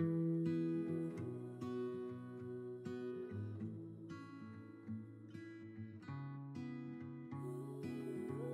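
Acoustic guitar music: plucked and strummed notes ringing out one after another, a little softer in the middle.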